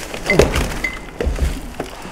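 Bicycle rolling over strewn rubbish: knocks and crunching of debris under the tyres, with low thumps as the bike jolts over it and a couple of short squeaks.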